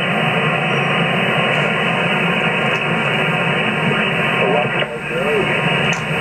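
Single-sideband receiver static: a steady hiss cut off sharply above about 3 kHz from an HF transceiver on 27.590 MHz USB receiving no strong signal. A faint, warbling voice fragment rises out of the noise about four and a half seconds in.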